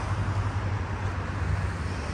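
Steady low rumble and hiss of road traffic, with no single vehicle standing out.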